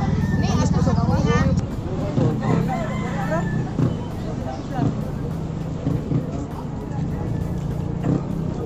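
People talking over a steady engine hum that stops about a second and a half in and comes back near the end, with a rooster crowing partway through.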